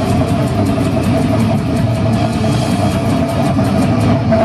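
Brutal death metal band playing live: heavily distorted low guitar and bass under rapid, dense drumming, loud throughout.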